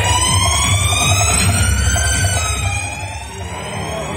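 A long electronic rising tone played through stage loudspeakers, several pitches sliding slowly upward together like a siren sweep, over a heavy low hum; it eases off about three seconds in.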